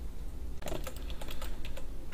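A quick run of clicks from a computer keyboard, starting a little after half a second in.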